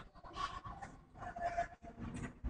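A man breathing hard while working a plate-loaded lat pulldown: two short, faint breaths about a second apart.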